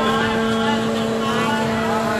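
Background chatter of many people in a crowded hall, over a steady two-pitched mechanical hum.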